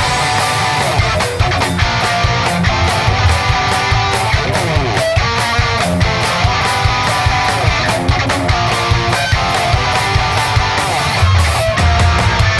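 Japanese garage-rock band playing live: loud electric guitars over a steady, driving drum beat, at the opening of a new song.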